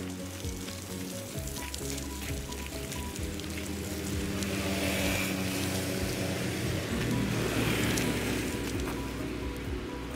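Background music over a steady crunching hiss from pram wheels rolling on a gravel path, which grows louder through the middle.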